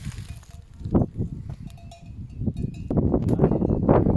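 Bells on a grazing flock of sheep clinking faintly and irregularly. Wind buffets the microphone in low rumbles and grows louder from about three seconds in.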